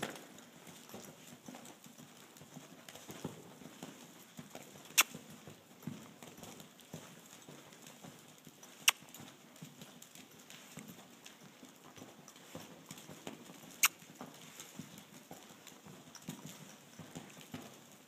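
A horse's hoofbeats on soft dirt arena footing as it canters on the lunge line, faint and irregular. Three sharp clicks, spread several seconds apart, are the loudest sounds.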